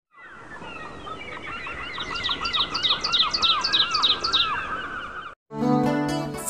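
Birds chirping in quick repeated calls, about four notes a second, growing louder and then cutting off suddenly about five seconds in. Music starts just before the end.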